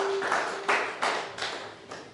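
A held guitar chord cuts off, then a few scattered hand claps from a small congregation die away after a song.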